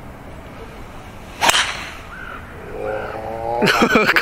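A golf driver strikes a ball off the tee with one sharp crack about a second and a half in. A drawn-out voice rises soon after, and people talk near the end.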